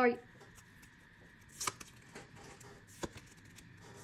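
Pokémon trading cards being handled: a few soft clicks and a short swish about halfway through as cards slide against one another in the stack.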